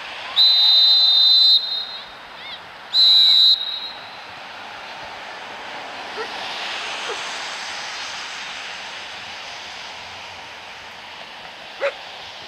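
Referee's whistle blown twice: a long shrill blast of about a second, then a shorter blast about two and a half seconds later, over faint outdoor background noise.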